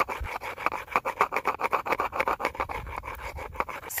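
A flint-knapping hammerstone filing down the outside edge of a cow jawbone, stone rasping on bone in a rapid run of short back-and-forth strokes that smooths off its rough edges.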